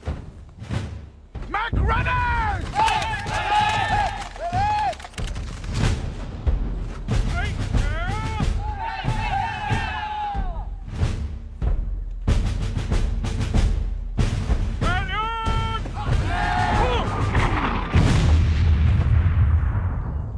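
Film battle soundtrack: repeated musket shots and heavy booms, with men yelling in several drawn-out cries, over orchestral music.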